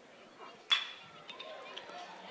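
Metal baseball bat striking a pitched ball once about three-quarters of a second in: a sharp ping with a brief ring, putting a ground ball in play. Faint crowd ambience surrounds it.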